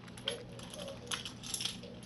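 A few light metallic clinks and jingles from a set of keys being handled.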